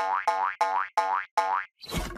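Cartoon pogo-stick spring boing effect, five bounces in quick succession, about three a second, each a short springy twang that bends upward in pitch.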